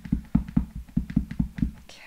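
A clear stamp on an acrylic block tapped rapidly and repeatedly onto an ink pad to ink it, about six dull taps a second. The tapping stops near the end.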